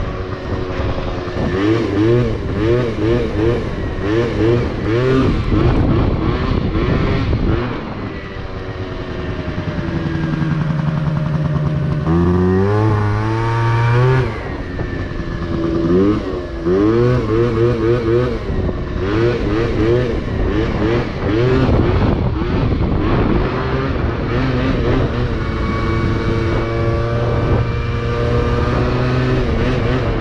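Yamaha Zuma scooter's two-stroke engine, fitted with a Malossi 70 cc cylinder kit and Malossi expansion pipe, revving under way. Over the first several seconds and again past the middle it rises and falls in quick repeated surges. About twelve seconds in there is one long rising rev, and between these it runs steadier.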